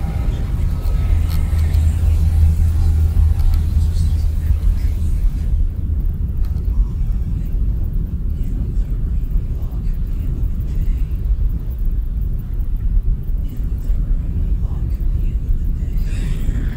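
Experimental electronic music from modular and physical-modeling synthesis: a loud, dense, low rumbling drone. A strong deep hum runs through the first few seconds. About five seconds in, the higher hiss drops away, leaving mostly the low rumble.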